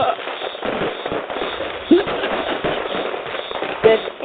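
Fireworks crackling and popping in a rapid, dense string, with a couple of louder pops, one about halfway through and one near the end.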